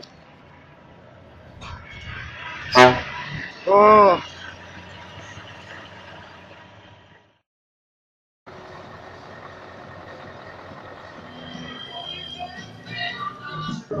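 Truck air horn sounding twice over a low engine rumble: a short, sharp toot about three seconds in, then a louder, longer blast about a second later that rises and falls in pitch. The sound then drops out for about a second and gives way to a busier hall ambience.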